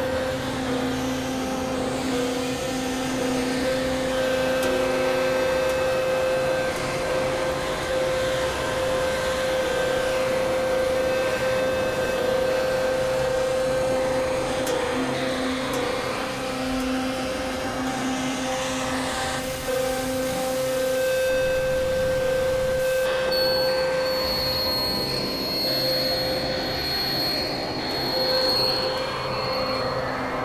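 Layered experimental drone and noise music: steady held tones over a dense, grinding wash of noise, with a high whistling tone joining about three-quarters of the way through and holding almost to the end.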